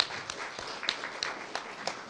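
Room applauding: many hands clapping together, fading toward the end, with one sharp close clap near the microphone at the start.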